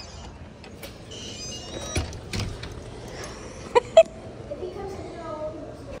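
Glass entrance doors being pushed open and held, with scattered clicks of door hardware over a steady outdoor rumble of traffic. Two sharp knocks come close together about four seconds in, the loudest sounds, and faint voices run underneath.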